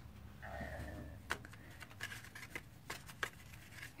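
Faint paper handling: a few light clicks and rustles of cardstock being picked up and moved on a craft mat.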